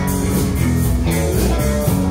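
Live rock band playing: electric guitars, bass guitar, keyboard and drum kit, with a steady beat.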